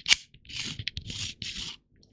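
Sliding jaw of a cheap Chinese 150 mm digital caliper run back and forth along its beam with the thumb wheel: several short scraping strokes. It rubs with a lot of friction, which the owner puts down to a poor finish.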